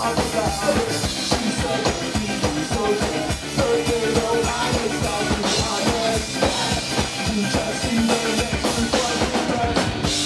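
A live ska-punk band playing loud and fast, with the drum kit's kick and snare hits driving a busy, steady beat under pitched band parts.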